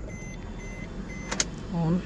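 A single sharp click about a second and a half in, over a faint low background and a faint high electronic tone that comes and goes in short dashes. A brief voice sound comes near the end.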